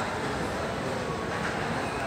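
Steady, even background noise of an indoor hall, with no single distinct event.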